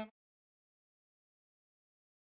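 Dead silence: the soundtrack cuts off completely right after a man's last spoken word at the very start.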